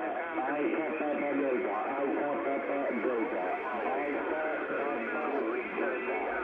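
Amateur radio pile-up heard through a Yaesu FRG-7700 communications receiver on single-sideband in the 20 m band: several stations' voices calling over one another, thin and narrow in tone, with no clear words.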